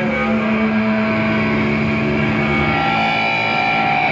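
Amplified electric guitar holding a distorted chord that rings on as a steady drone with feedback, higher feedback tones swelling in over the seconds.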